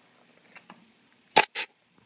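A metal spoon stirring boiled peanuts in a stainless steel pot, with a few faint clicks and scrapes. Near the end come two short, loud knocks about a quarter second apart.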